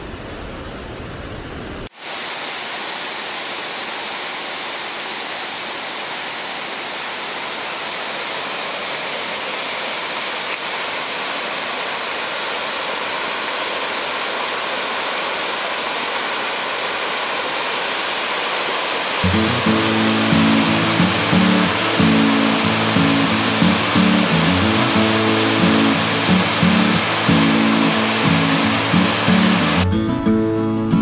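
Rushing water of a fast mountain stream, then, after a cut about two seconds in, the steady rush of water pouring over a wide river weir, growing slowly louder. About two-thirds of the way through, music starts playing over the water.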